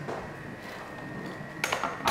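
Kitchenware clattering briefly near the end, over a quiet room background with a faint steady high whine.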